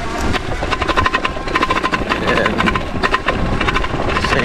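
The ENGWE X20 e-bike's front suspension fork clatters as the bike rides over a bumpy dirt road: a rapid, irregular rattle over a low rumble of tyres and wind, with a steady whine beneath it. The clatter is the fork's known noise fault.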